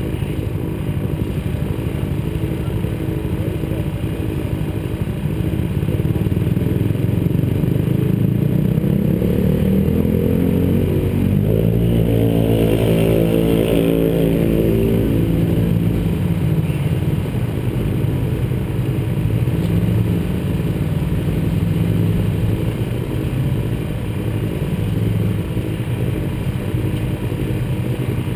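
A side-by-side UTV's engine revs up as it approaches and passes, loudest about halfway through, then drops in pitch and fades. Another engine runs steadily underneath throughout.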